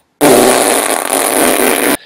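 A loud, rasping fart sound lasting nearly two seconds, starting and stopping abruptly.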